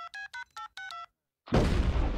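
Cell phone keypad dialing: a quick run of short touch-tone beeps over the first second. About half a second later comes a loud blast with a long low rumble, a cartoon explosion set off by the call.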